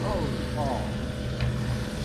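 Suzuki outboard motor idling, a steady low hum, with a faint voice in the first second.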